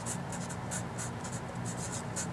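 Sharpie felt-tip marker writing on paper: a quick run of short, scratchy strokes as a word is written, over a steady low hum.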